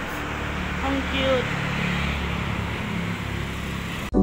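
Street ambience: a steady wash of traffic noise, with a few brief voice fragments in the first second and a half.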